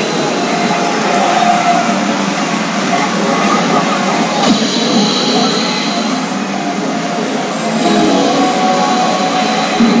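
A CR Garo FINAL pachinko machine playing its presentation music and sound effects, loud and unbroken, over the dense continuous din of a pachinko parlor.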